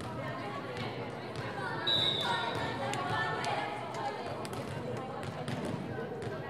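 Voices in a gymnasium with a volleyball bounced on the hard gym floor, several short thuds, and a brief high-pitched tone about two seconds in.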